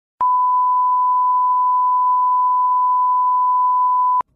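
Broadcast line-up test tone that goes with colour bars: one steady, pure beep at a fixed pitch, starting with a click a moment in.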